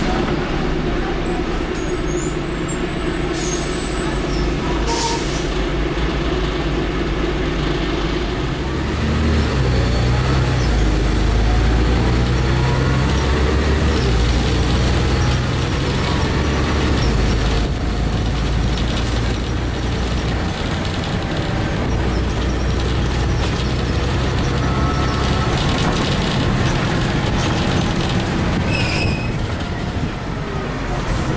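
Cummins LT10 straight-six diesel of a 1993 Leyland Olympian double-decker bus, heard from inside the lower deck: a steady engine note, then from about nine seconds in a louder, deeper rumble as the bus gets under way.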